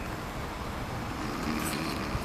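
Outdoor parking-lot background: a steady low rumble and hiss of traffic-area ambience, with a faint voice near the end.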